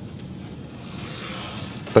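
An X-Acto craft knife drawn along a yardstick, scoring cardboard: a faint scratchy hiss that grows over the second half, over a steady low room hum.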